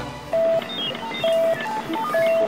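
An edited-in electronic sound effect: a simple beeping tune of three held beeps on the same note, about a second apart, with quick higher blips stepping between them.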